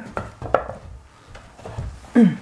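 A few light knocks and taps, two sharp ones in the first half second, then fainter ones and a soft low thump near the end.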